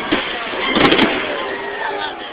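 Fireworks going off: a sharp bang just after the start, then a louder boom about a second in, over the show's music.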